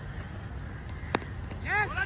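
A single sharp crack of a cricket bat hitting a tape ball about a second in, followed near the end by a loud shouted call from a player.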